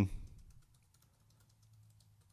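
Faint, irregular keystrokes on a computer keyboard as a command is typed.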